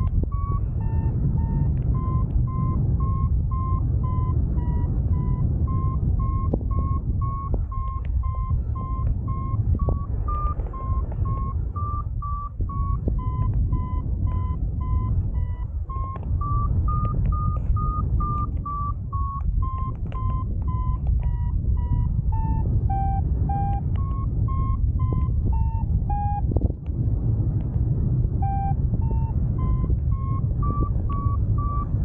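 Paragliding variometer beeping about twice a second, its pitch rising and falling as the climb rate changes, signalling that the glider is climbing in lift. Under it, steady wind rushing over the microphone in flight.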